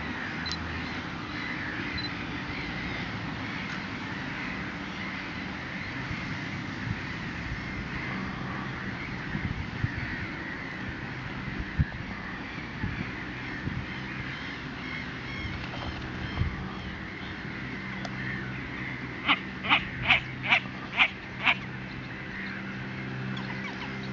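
Reed-marsh ambience with a steady background of distant birdsong and a low hum. Near the end, a bird gives six loud, harsh calls in quick succession, about two or three a second.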